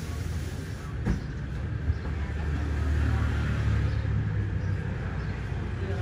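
Low rumble of a passing vehicle that swells and fades in the middle, with a couple of light knocks in the first two seconds.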